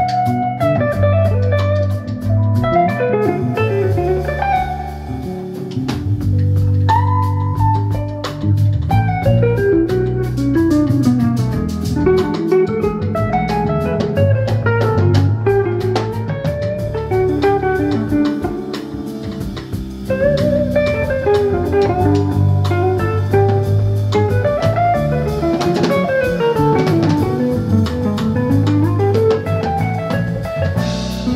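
Jazz fusion quartet playing live: a Gibson ES-335 semi-hollow electric guitar takes a solo of quickly moving single-note lines over electric keyboard, bass and drum kit.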